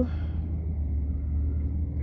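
Steady low rumble of a car on the move, heard from inside the cabin.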